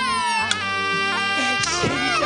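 Errenzhuan stage music. A male singer's drawn-out wailing "ah" slides down in pitch and ends about half a second in. The accompanying band then plays on with held notes and a sliding phrase near the end.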